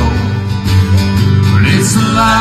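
Live country music from two strummed acoustic guitars over steady electric bass notes, played through a PA.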